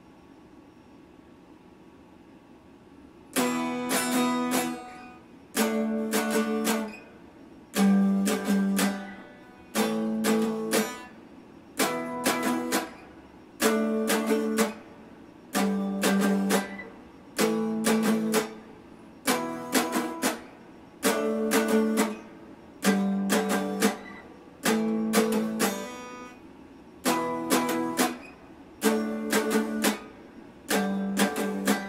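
Electric guitar strummed in a slow, even rhythm: a chord struck about every two seconds, ringing briefly and then damped, the chords changing in pitch. The strumming starts about three seconds in after a quiet pause.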